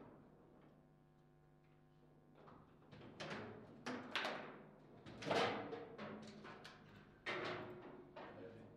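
Foosball play on a table football table: the hard ball knocked by the rod figures and striking the table walls in a run of sharp knocks with a brief ring, after a quiet start. The loudest knock comes about five seconds in, in a rally that ends in a goal.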